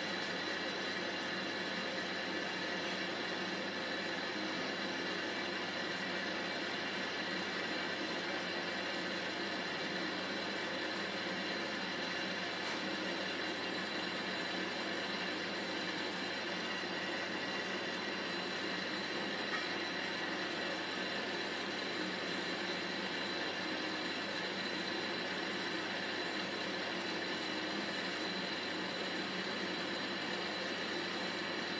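Electrolux Time Manager front-loading washing machine running, a steady hum with a faint high tone and no change in pitch or level.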